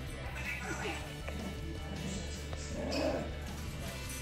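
A pet parrot chattering and talking faintly in the background over soft background music.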